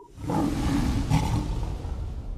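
A lion's roar sound effect. It swells up quickly, holds with a deep low rumble underneath, then slowly trails off.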